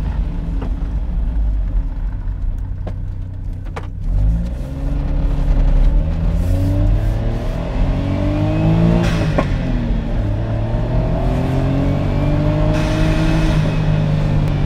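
Autozam AZ-1's turbocharged 660 cc three-cylinder engine with an aftermarket exhaust, running steadily and then accelerating about four seconds in. It revs up through the gears, its pitch climbing, dropping at each shift and climbing again.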